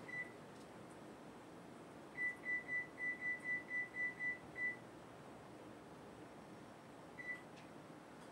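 Electronic beeps from a kitchen appliance's control panel, all at one high pitch: a single beep, then a run of about ten quick beeps over roughly two and a half seconds, then one more beep near the end.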